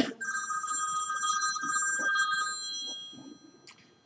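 Mobile phone ringtone going off: a chime of several steady high tones for about two and a half seconds, then fading away as the volume is turned down.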